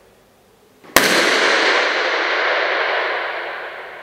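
A single balloon pop about a second in, followed by a long reverberant tail in a traditional old school gym. The tail fades slowly and is still ringing three seconds later.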